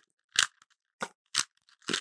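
Rubik's Cube layers being twisted by hand, with three short plastic clicks as the faces turn.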